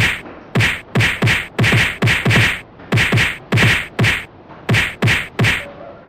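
A rapid flurry of fight-scene hits, like punches and kicks: about two or three hard whacks a second, each with a dull thud under it.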